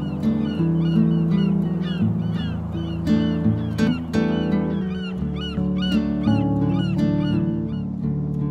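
Calm background music with sustained low notes, over which a bird calls in quick, short chirps, about three a second, with a brief pause around the middle.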